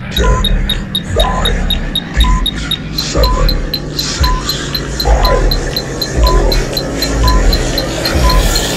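Countdown-timer soundtrack ticking down from ten: a short beep every second, each with a low thump, and a faster high tick about twice a second.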